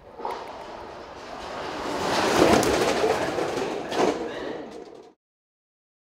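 Skeleton sled's steel runners rumbling and scraping along the ice track, swelling to a loud peak with a few clattering knocks, then cut off abruptly about five seconds in.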